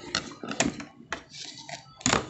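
Handling noise: four or so short, sharp clicks and knocks, the loudest a little over half a second in, then a brief rustle, as the recording phone and tools are moved about on the work surface.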